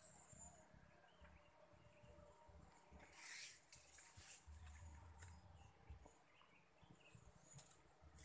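Near silence, with faint rustling of avocado leaves and branches around three to five seconds in as the tree is climbed.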